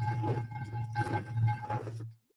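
A steady low hum with fainter steady high whine tones above it and muffled, indistinct sound underneath.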